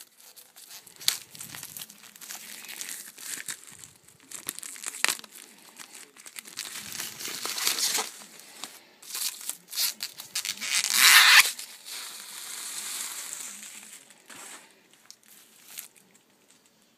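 Plastic shrink-wrap being torn and peeled off a hardcover book. It crinkles and crackles in irregular bursts, and the loudest, longest crinkle comes about two-thirds of the way through.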